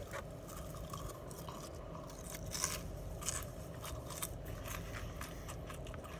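Close-up chewing of curly fries: a run of short, irregular crunches and mouth clicks over a steady low hum inside a car.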